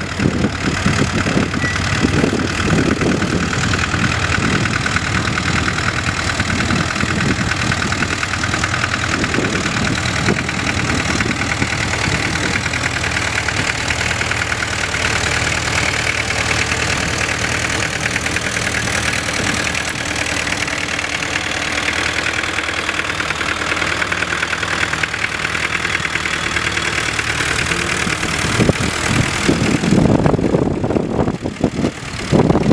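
International B-275 tractor's four-cylinder diesel engine running steadily under load while pulling a plough through stubble.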